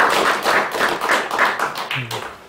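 Audience applauding, many hands clapping together, thinning out to a few separate claps and dying away near the end.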